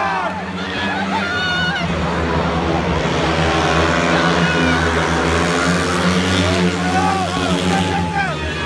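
Speedway bikes' 500cc single-cylinder methanol engines racing round the track: a steady engine drone that swells as the pack comes round toward the crowd. Spectators' voices carry over it.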